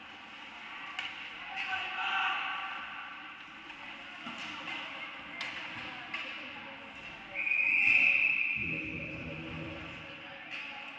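Ice hockey play: several sharp clacks of sticks and puck through the first six seconds, then a referee's whistle blown as one long steady blast of about two seconds, starting about seven seconds in, stopping play.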